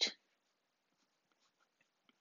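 Faint, sparse scratches and taps of a stylus drawing on a tablet screen.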